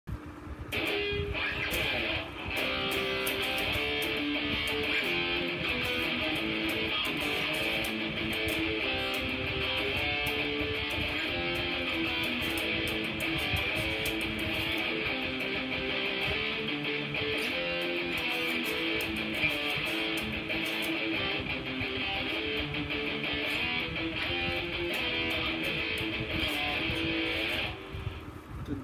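Electric guitar played through an amplifier: a continuous line of notes changing in pitch, with a brief dip about two seconds in. It stops abruptly just before the end.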